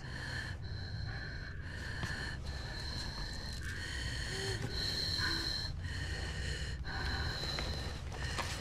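A person breathing fast and hard, with a wheezing whistle, inside a hazmat suit's hood. The breaths come about once a second.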